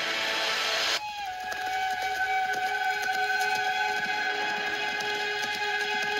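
Film soundtrack heard from a TV speaker: a dense rushing noise for about the first second, then a steady held chord of several high tones, like a sustained note in the score.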